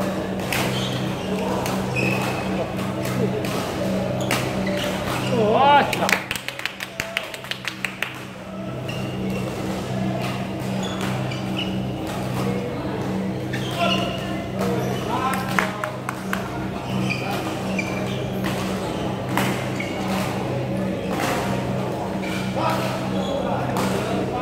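Badminton hall sounds: sharp clicks of rackets striking shuttlecocks and a few short squeaks of court shoes, over a steady low hum and the voices of players on the courts.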